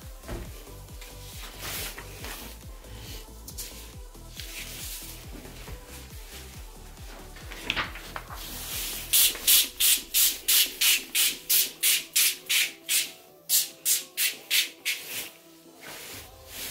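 Hand pump spray bottle spraying very liquid water-based carbon conductive ink: about twenty short hissing squirts in quick succession, roughly three a second, with a brief pause partway through. Before the spraying starts there is background music with a steady beat.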